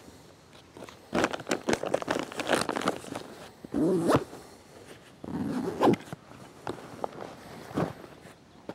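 Backpack zipper being pulled open, in several short strokes with fabric rustling as the pack is handled.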